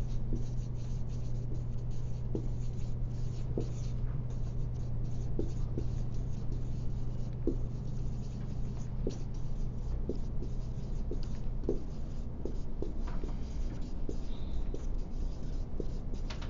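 Writing on a board: a string of short scratchy strokes and small taps, over a steady low room hum.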